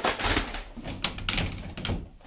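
A rapid, irregular flurry of sharp clicks and knocks over low thumps, from quick handling and movement at a closet door.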